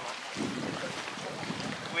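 Outdoor ambience: steady wind noise on the microphone, with faint voices of people nearby.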